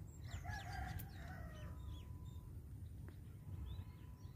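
A rooster crowing once, a single long call of a little over a second, with small birds chirping.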